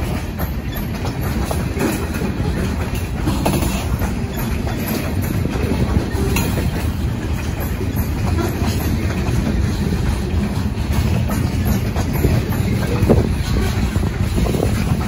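Covered hopper cars of a freight train rolling past: a steady rumble of wheels on rail, with scattered sharp clicks and clacks from the wheels on the track.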